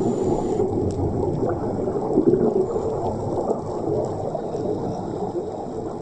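Underwater ambient noise picked up by a camera in a waterproof housing on a scuba dive: a steady, low, muffled rumble of moving water.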